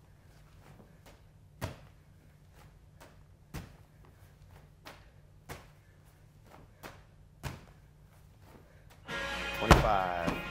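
A 14-pound medicine ball thudding against a gym wall during wall-ball shots, one sharp thud about every two seconds with fainter knocks between. Near the end, loud music with guitar starts and drowns them out.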